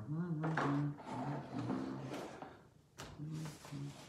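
A man's low voice with unclear words, alongside rustling and handling of a nylon backpack, with a short click about three seconds in.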